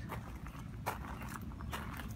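Footsteps crunching on a gravel path, three steps at a slow walking pace.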